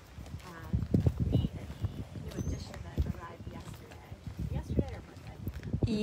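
Footsteps on gravel, with irregular low thumps.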